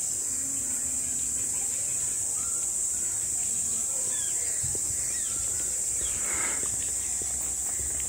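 Insects shrilling in a steady, high-pitched drone from the trees, with a few faint chirps over it.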